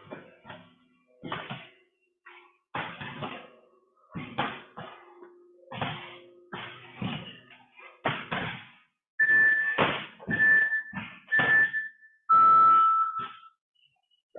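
Irregular thumps and knocks of people exercising on a gym floor. Near the end an interval timer gives three short high beeps about a second apart, then one longer, lower beep, marking the end of a 20-second work interval.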